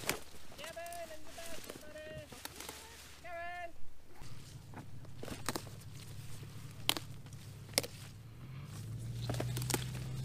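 Pepper plants rustling, with sharp snaps and clicks as bell peppers are pulled off their stems. Three short pitched, voice-like calls come in the first four seconds. A low steady engine hum starts about four seconds in and grows louder near the end.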